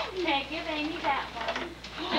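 Indistinct voices talking in a room, with a steady low hum underneath.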